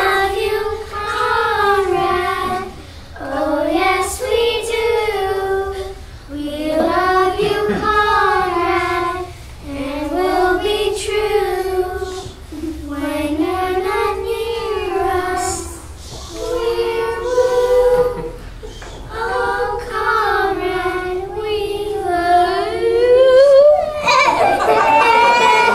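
A group of young girls singing a show tune together, in phrases of about two seconds with short breaths between them.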